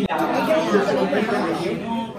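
Speech only: several voices talking over one another amid the chatter of a busy dining room.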